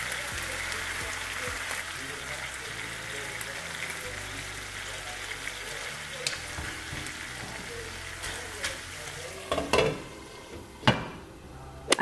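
Sardines in tomato sauce sizzling steadily as they fry in a nonstick pan, stirred with a spatula. The sizzle thins near the end, with a few sharp knocks.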